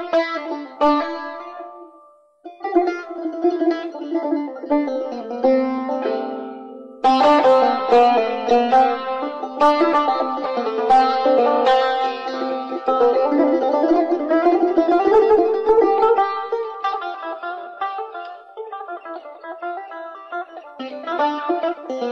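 Persian tar, a long-necked plucked lute, played in an instrumental passage of Persian classical music in the Bayat-e Tork mode: quick runs of plucked notes that break off briefly about two seconds in, then grow denser and louder from about seven seconds.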